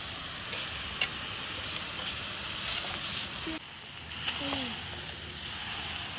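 Noodles and vegetables sizzling as they are stir-fried in a steel pan over a fire, with a steady frying hiss. A couple of sharp clicks come from the utensil against the pan.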